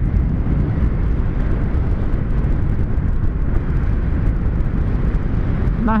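Wind rushing over the microphone of a Yamaha MT-03 motorcycle at highway cruising speed, with the bike's engine and tyre noise beneath it, steady throughout.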